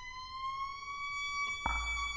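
Violin holding one long bowed note that slides slowly upward in pitch, re-attacked with a fresh bow stroke near the end.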